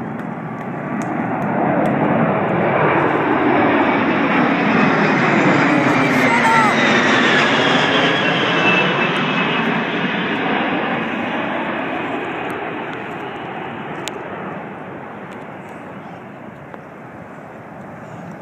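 Jet engine noise from the four turbofans of the Boeing 747 Shuttle Carrier Aircraft, with a space shuttle riding on its back, passing low overhead. The noise builds over the first couple of seconds and is loudest through the middle, with a sweeping change in tone as the aircraft goes over. It then slowly fades as the aircraft flies away.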